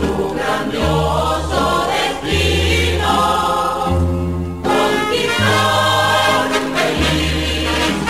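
Choral music: a choir singing long held chords over sustained bass notes that change about every second.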